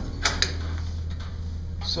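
Two quick knocks about a fifth of a second apart near the start, as things are handled and set down on a desk, over a steady low hum.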